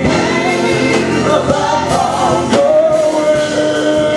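Gospel vocal group, women and a man, singing in harmony into microphones with electric keyboard accompaniment, some notes held long.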